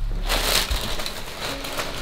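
Tissue paper rustling and crinkling as it is handled in a cardboard sneaker box, loudest about half a second in.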